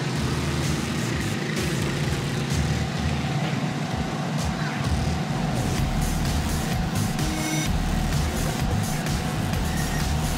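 Dirt-track race car engines running, a steady low rumble, with music playing underneath.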